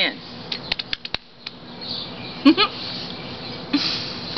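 A few light clicks about half a second to a second in, then a short wavering voice-like sound about two and a half seconds in, over steady outdoor background noise.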